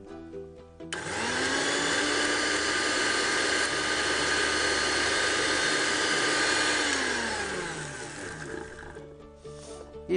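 Electric mixer grinder with a steel jar running: the motor starts suddenly about a second in, runs at steady speed for about six seconds, then is switched off and winds down with a falling whine.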